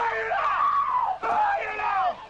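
A high-pitched voice screaming in distress, in two long cries with a short break just over a second in.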